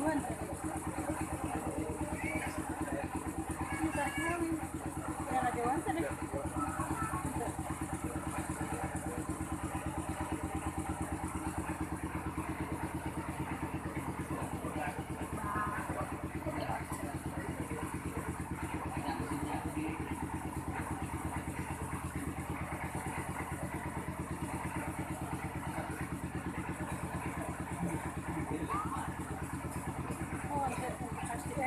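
A small engine running steadily at idle, a constant low drone with an even pulse, under faint, low voices.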